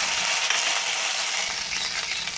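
Ginger-garlic paste sizzling in hot oil in a steel pot, a steady hiss as it fries.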